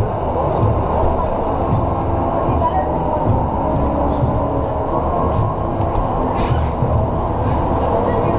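Olympia ice resurfacer running steadily as it drives past close by, a continuous muffled, dull machine sound.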